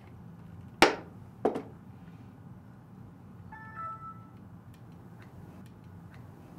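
Two sharp knocks about two-thirds of a second apart, the first the louder, then about two seconds later a brief chime of a few short tones over a low steady room hum.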